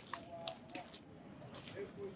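A pause in a man's speech: faint background ambience with a few soft clicks.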